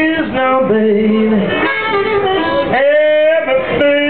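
Live blues band: a male singer holding long, bending vocal notes over guitar accompaniment, with a rising slide in pitch about three seconds in.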